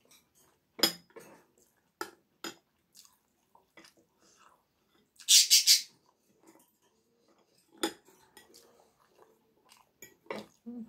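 Metal fork clinking against a glass bowl a few times, with a louder scrape of about half a second in the middle as food is scooped up.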